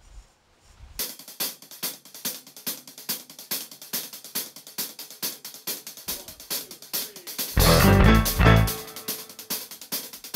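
A drummer counts in a rock band by playing a steady pattern on the drum kit's hi-hats alone. About seven and a half seconds in, the band comes in loud and together on bass guitar, drums and keyboard, then drops back briefly near the end.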